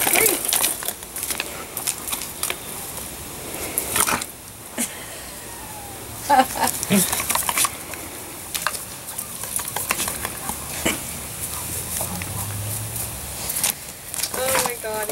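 A dog digging in soil and gravel with its front paws: irregular scratching and scraping, with dirt and small stones scattering.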